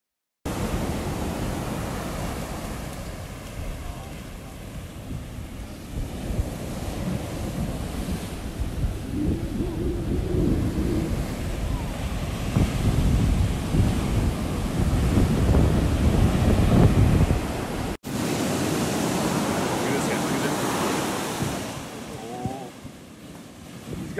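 Shorebreak waves breaking and washing up the sand, with wind buffeting the microphone in a heavy low rumble. The sound cuts out for an instant about three-quarters of the way through, then the surf carries on.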